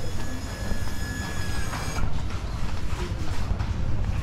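Street noise: a steady low rumble with a thin high whine that stops about two seconds in.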